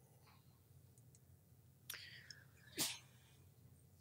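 Near silence: room tone with two short, soft breath sounds close to a microphone, about two and three seconds in.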